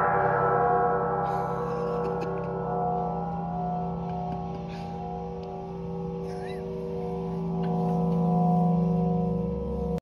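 Large hanging metal gong ringing on after a single wooden-mallet strike, many steady tones slowly dying away, with a low hum that swells again near the end.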